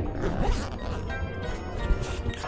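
Cloth rustling and scraping close against the microphone while the camera is handled under fabric, with a couple of sharp knocks, over background music.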